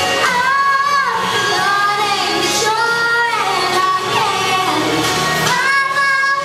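A six-year-old girl singing into a handheld microphone over music, holding long notes of about a second each and gliding between pitches.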